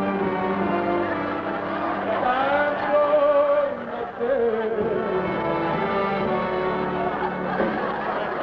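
Male voices singing long, held notes over a big band with brass playing.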